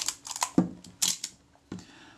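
Short metallic clicks and light knocks, about five in two seconds, from a Kodak Retina Reflex S camera body being turned over in the hands and set down on a work mat.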